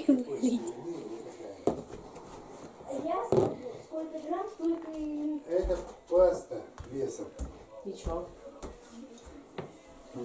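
Quiet, indistinct talking of children and adults in a small room, with a few soft low thumps in the second half.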